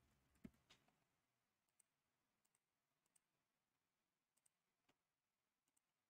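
Near silence, with faint scattered clicks of a computer's mouse and keyboard. Two clearer clicks come about half a second in, then a few fainter ticks.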